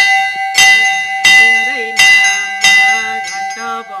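Hanging brass temple bells rung by hand, pulled by their ropes in a steady run of loud strikes about every two-thirds of a second, each one ringing on into the next.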